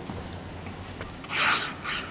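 A two-component spray-foam gun shooting maximum-expansion foam into the roof ridge seam: a short hissing burst about a second and a half in, then a second, shorter one.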